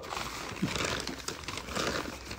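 Newspaper gift wrapping crinkling and rustling as it is pulled open by hand.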